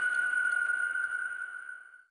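A single high, steady ping-like tone ringing on and slowly fading away over about two seconds: a short audio-logo chime.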